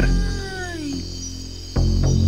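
An eerie wailing cry as a story sound effect: one drawn-out call falling in pitch, about a second long. It plays over background music, with deep booming hits just before it and again near the end.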